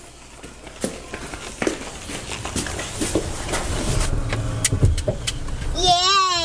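Car door and child car seat being handled: scattered sharp knocks and clicks, over a low rumble that swells about four to five seconds in.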